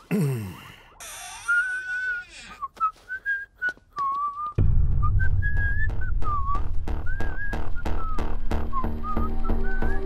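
A whistled tune wavering up and down, joined about four and a half seconds in by background music with a heavy, steady beat.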